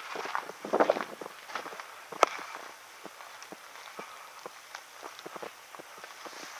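Slow footsteps on gravel and dry grass, irregular and cautious, with one sharp click a little over two seconds in.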